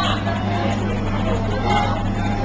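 Steady low hum and rumble of a moving passenger train coach heard from inside, with other passengers' chatter in the background.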